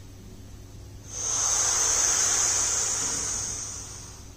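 A long hissing breath drawn in through lips pursed into a crow's beak, the inhalation of kaki mudra pranayama. It starts about a second in, holds steady and fades away near the end.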